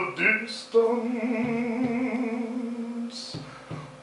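Overtone singing: after a few short shifting sung notes, one voice holds a single steady note for about two and a half seconds. There is a short hiss of breath about half a second in and again near the end.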